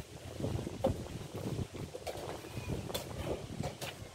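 Wind buffeting the microphone in uneven low gusts, with a few sharp clicks of wooden chess pieces being set down and a chess clock being pressed during a blitz game.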